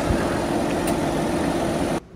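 Diesel engine of a white Lamborghini tractor running steadily as the tractor drives off.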